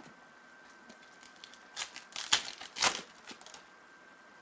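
Trading cards being handled and laid down on a tabletop: a short cluster of sharp snaps and rustles in the second half, with two louder clicks.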